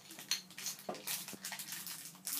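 Small domino tiles clicking lightly against each other and the table as they are set down in a row, a few separate clicks.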